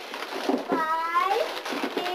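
A domestic cat meowing once, about a second in: a single drawn-out call that rises and then falls in pitch.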